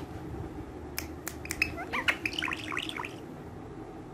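Indian ringneck parakeet chattering: a few sharp clicks, then a quick run of short chirps rising and falling in pitch for about a second and a half.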